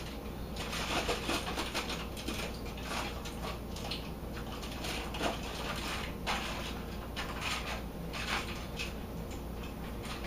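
Aluminium foil crinkling and rustling in irregular bursts as it is pressed and peeled back by hand while rolling a log of ground pork.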